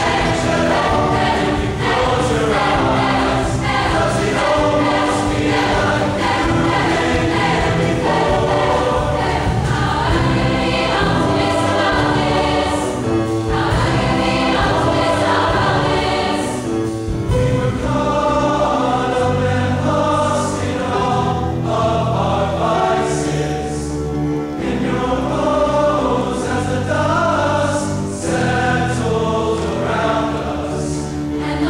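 A large choir singing sustained chords, accompanied by piano and a drum kit, with the bass growing fuller in the second half and cymbal strokes near the end.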